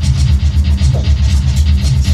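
Large drum kit played in fast, dense strokes with cymbals ringing over loud music that has a pulsing bass line.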